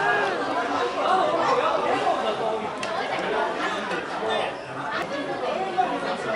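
Restaurant chatter: many overlapping voices talking at once in a steady babble, with one sharp click about five seconds in.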